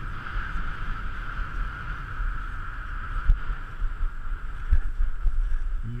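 Cross-country skis gliding fast in a snow track with a steady hiss, wind rumbling on the camera microphone, and a couple of short knocks.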